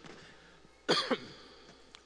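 A man coughs once, short and sharp, about a second in, followed by a brief fade.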